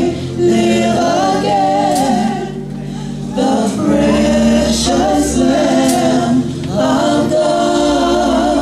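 A gospel praise team of women singing a slow worship song together into microphones, holding long notes in harmony over low held accompaniment notes that shift every few seconds.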